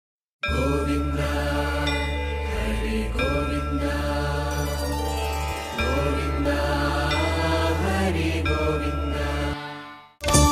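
Hindu devotional mantra chanting over a steady low drone, as a channel intro. It starts about half a second in and fades out just before the end.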